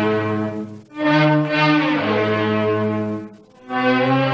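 Orchestral instrumental introduction to an Egyptian love song: strings with brass play long, held chords in phrases. Short breaks come about a second in and again near the end.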